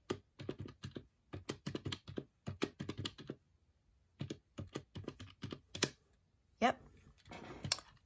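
Keys of a TRU RED desktop calculator tapped with the tip of a pen: a quick, irregular run of small clicks, a short pause about halfway, then another run.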